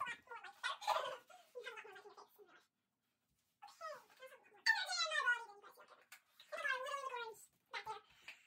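Girls' high-pitched, squeaky voices in short bursts with pitch sliding up and down, cat-like but without clear words. The sound cuts out completely for about a second near the middle.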